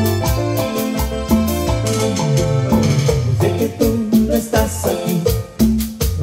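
Live cumbia band playing an instrumental passage: electric bass, keyboard and drums over a steady beat, with a falling keyboard run around the middle.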